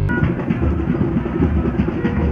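Drum-heavy music with a repeated deep low beat, muffled, with little in the high end.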